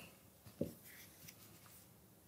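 Near-quiet room with a brief soft thump about half a second in and a few tiny faint ticks after it: small handling sounds at a desk with an open book.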